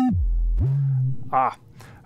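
Digital audio feedback tone from an Ableton Live feedback loop, its pitch sliding steeply down as an EQ Eight filter is swept, settling into a very low hum, then jumping up to a steady low tone that fades out about a second in. The feedback is running with no limiter yet on the chain.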